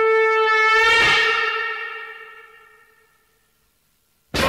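The closing note of a Hindi film song: one long held wind-instrument note that swells about a second in, then fades out over the next two seconds.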